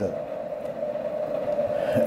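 Steady background hum with a constant mid-pitched tone over a low noise haze; nothing starts or stops.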